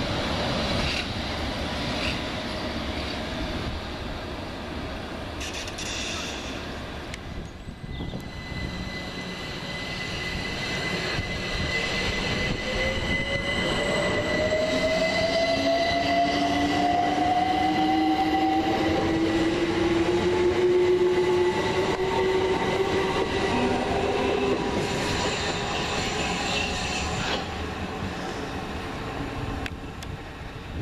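A London Underground S7 Stock train pulling away, then a London Overground Class 378 electric train accelerating out of the station, its traction motors making a steady rising whine over wheel and rail noise that grows louder as it passes.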